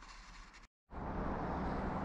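Faint room tone, cut off by a brief moment of dead silence, then steady outdoor background noise with a low hum.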